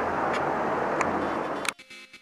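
Rushing handling noise from a handheld camera being swung around, with a few faint clicks. It cuts off suddenly near the end, and background music with a beat starts.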